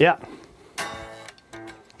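Solid-body electric guitar strummed: one chord about three-quarters of a second in, left to ring briefly, then a quieter strum near the end. The guitar is totally out of tune.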